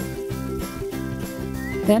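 Light background music with held notes over a steady beat; a voice comes in at the very end.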